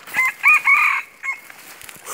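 Red junglefowl cock crowing loudly: a short, clipped crow of three quick notes, the last one longest, with a brief extra note just after.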